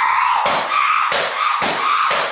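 A series of loud thumps, three of them a little under a second apart.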